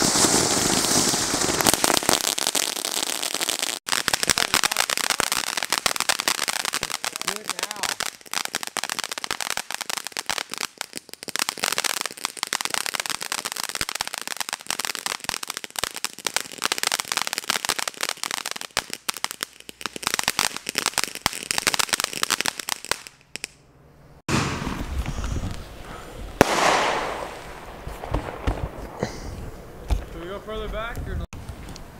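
Ground fountain fireworks spraying sparks with a continuous hiss and dense, rapid crackling. After about 23 seconds the crackling drops out briefly and gives way to a different, lower rumbling noise.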